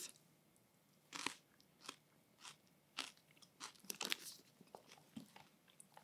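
A man chewing a mouthful of fresh parsley sprigs: faint, irregular crunches about every half second, busiest around four seconds in.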